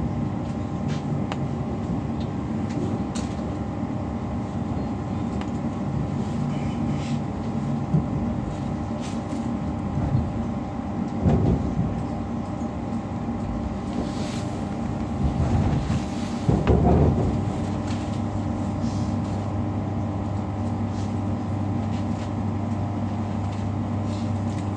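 Class 345 electric train running at speed, heard from inside the carriage: a steady rumble and hum with several held tones, and a few louder surges of rattle and rumble about halfway through. A low steady hum sets in about three quarters of the way through.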